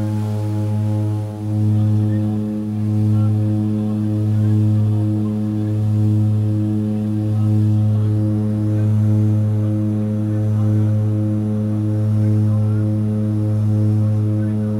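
Cabin drone of a de Havilland Canada DHC-6-300 Twin Otter's two Pratt & Whitney PT6A turboprops at take-off and climb power: a steady, loud, low propeller hum that swells and fades about every second and a half as the two propellers beat slightly out of sync.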